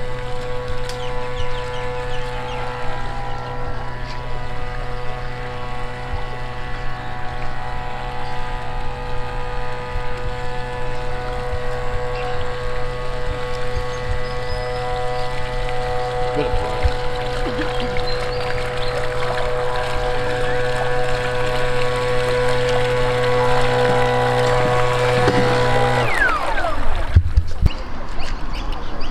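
Background music: a sustained chord of steady tones that holds without change, then stops suddenly about two seconds before the end.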